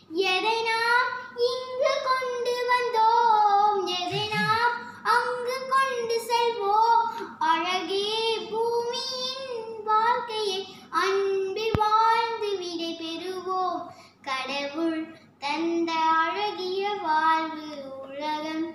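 A young girl singing solo and unaccompanied, in long held, wavering notes with brief pauses between phrases.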